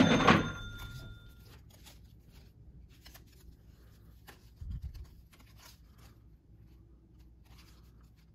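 Faint clicks and rustles of trading cards in plastic sleeves being handled and shifted between the hands, with a soft thump about halfway through. At the very start a short bell-like ding rings for about a second.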